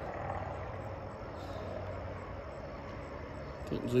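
Steady outdoor background ambience: a low, even rumble with faint high chirps repeating a few times a second.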